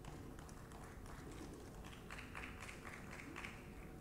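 Faint hall room tone with a low steady hum, a few light taps, and faint voices away from the microphone about halfway through.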